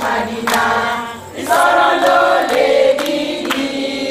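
A group of voices singing together in chorus, breaking off briefly just after a second in before carrying on.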